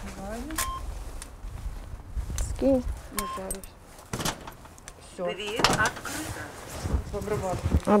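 Two short electronic beeps from a door intercom keypad as its buttons are pressed while being wiped with a cloth, followed by sharp clicks and knocks from the steel entrance door as it is opened.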